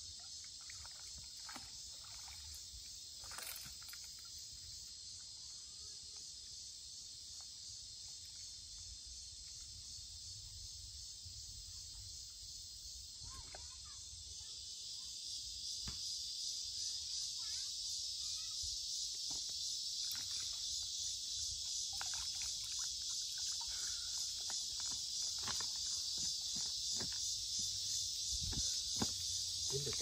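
Steady high-pitched insect chorus that swells louder about halfway through, with occasional faint clicks and rustles.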